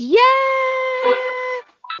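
A woman's long, drawn-out cheer of 'Yaaay!': the voice swoops up at the start, then holds one high note for over a second before stopping short.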